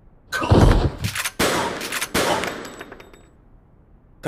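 Animated shotgun-fire sound effect: a loud blast about a third of a second in, followed by several more cracks that fade out by about three seconds in, with a brief high metallic ringing near the end.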